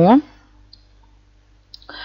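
The end of a woman's drawn-out word, then a quiet pause with a low steady hum and a few faint computer-mouse clicks near the end.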